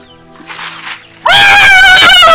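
Soft background music, then about a second in a sudden, very loud, high-pitched cry with a fast quavering wobble that holds to the end and breaks into up-and-down swoops.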